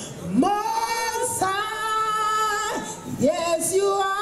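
A woman singing a Nigerian-style Christian gospel song into a microphone, amplified, in long held notes, each sliding up into pitch at its start.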